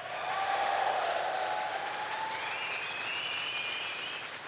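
AI-generated audience applause in a synthesized stand-up comedy track, swelling within the first second and slowly dying away.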